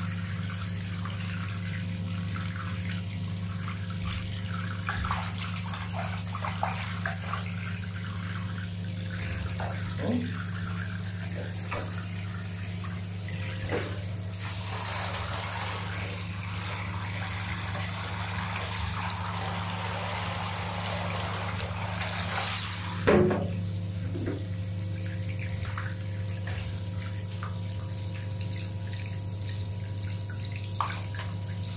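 Bath water splashing around a ferret in a bathtub, then a handheld shower head spraying water onto it from about halfway through, stopping with a loud knock. A steady low hum runs underneath.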